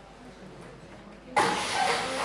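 Quiet room tone, then about a second and a half in a video's soundtrack starts abruptly from a laptop, much louder and dense with clatter and room noise.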